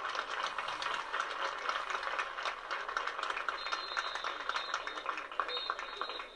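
Audience applauding in the stands: a steady, dense patter of many hands clapping.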